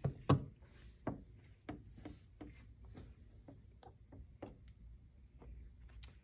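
A plastic squeegee working paint protection film down onto a headlight lens: a knock just after the start, then a string of faint, irregular clicks and taps.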